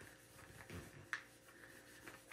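Faint rubbing of a small card burnisher over a rub-on transfer sheet laid on cloth, pressing the transfer down, with a couple of brief scrapes near the middle.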